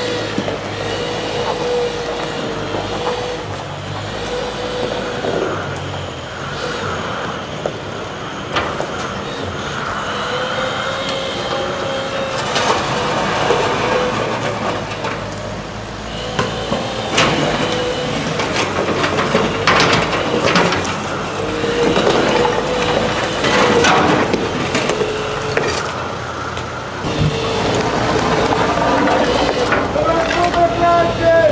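Diesel engine of a compact wheel loader running steadily while it works into a wooden shed, with repeated knocks and crashes of breaking timber and debris, mostly in the middle stretch.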